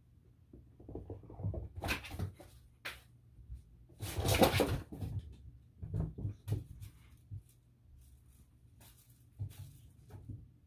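Kittens playing, with scattered knocks and scuffling and one louder scramble lasting about a second near the middle.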